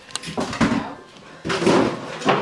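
Refrigerator door being pulled open, with a sharp click just after the start, amid people's voices.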